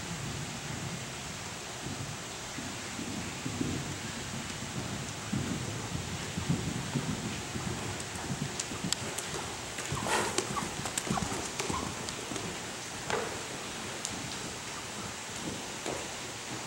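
Horse cantering on soft arena footing: a running series of dull hoofbeat thuds over a steady hiss, with a few sharper clicks and a louder burst about ten seconds in.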